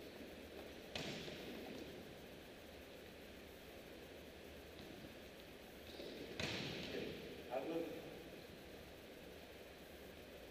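Volleyball being struck during play, sharp smacks echoing through a large arena: one about a second in and a louder one a little past six seconds, followed by short shouts from players.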